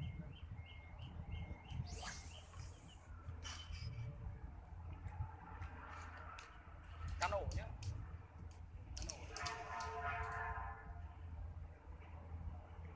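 A spinning-reel fishing rod being cast and worked. A short whoosh of line leaves the reel about two seconds in, followed by scattered clicks of the reel and rod handling, over a steady low outdoor hum.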